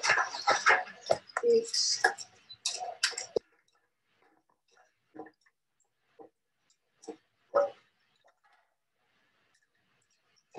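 Sticks of firewood clattering and knocking as they are handled and fed into a wood fire under a rice pot: a dense run of clicks and knocks, then a few single knocks spaced about a second apart.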